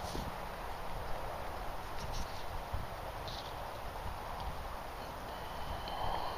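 Uneven low wind rumble on the microphone, with a few faint short rustles.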